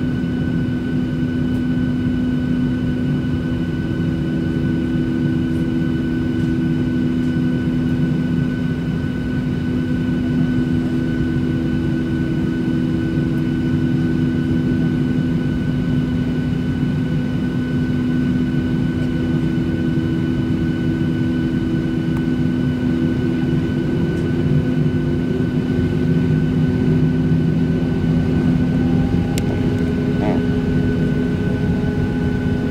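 Boeing 737-600's CFM56-7B jet engines idling, heard inside the cabin by the wing: a steady hum and rumble with several constant whining tones. One tone rises slightly in pitch near the end.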